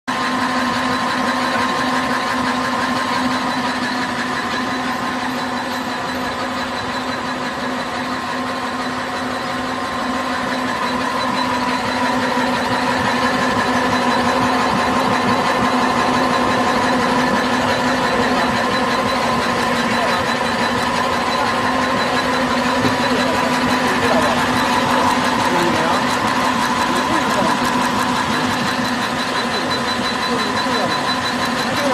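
An intermittent rotary die-cutting machine for printed labels is running continuously. It makes a steady mechanical hum and whine with overtones over a fast, even clatter from its stop-start web feed and cutting.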